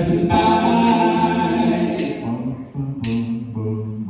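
Country band playing live, with pedal steel guitar, electric and acoustic guitars, bass guitar and drums, in a gap between sung lines.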